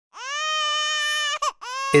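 Infant crying: one long wail held at a steady high pitch, a short catching break about a second and a half in, then a second wail rising just as a voice begins.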